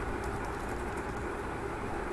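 Steady low room hum with a few faint clicks from a computer keyboard as text is deleted.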